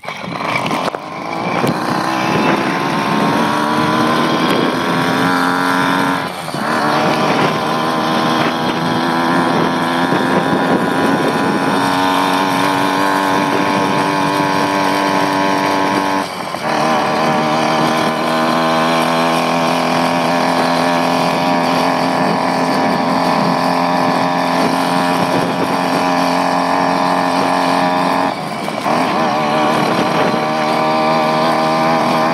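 A 66cc two-stroke motorized-bicycle engine running under way, its pitch climbing as it revs up over the first few seconds. The revs drop briefly three times, about 6, 16 and 28 seconds in, then climb again.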